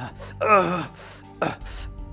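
A man gasping for breath, with sharp, ragged breaths about a second apart and a short strained vocal cry about half a second in.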